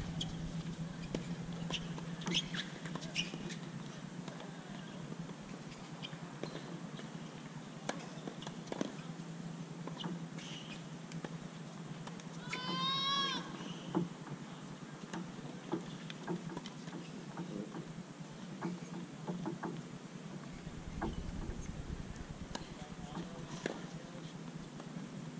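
Outdoor ambience with a steady low hum and scattered faint clicks and taps. About halfway through comes one short, clear call with several pitches, lasting about a second.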